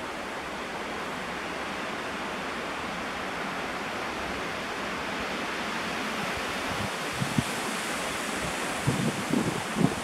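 Steady outdoor wind, an even hiss with no voice. A few soft, low handling thumps come near the end as the charcoal is picked up.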